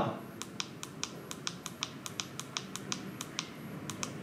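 Keypad buttons on an energy meter pressed over and over, a rapid run of sharp clicks at about five a second, stepping the ratio setting down one digit.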